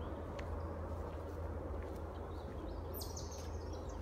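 Woodland ambience under a steady low rumble, with faint footsteps on a dirt trail and a short songbird call about three seconds in.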